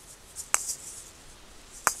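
Asalato balls swinging on their cord in a slow rotation, with a faint rattle and two sharp clicks about a second and a half apart as the balls knock together, the hit that reverses the direction of the spin.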